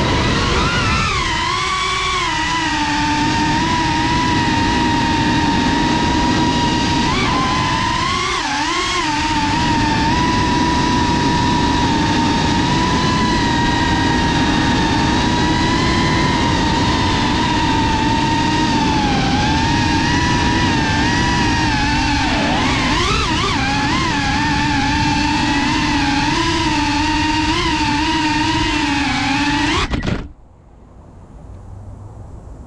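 Electric motors and ducted propellers of a Geprc Cinelog35 3.5-inch cinewhoop quadcopter whining in flight, a steady buzzing whine whose pitch wavers with the throttle and dips briefly a few times as the drone manoeuvres.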